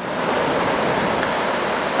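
Steady rushing of a large waterfall, Lepreau Falls on the Lepreau River: an even hiss with no distinct tones.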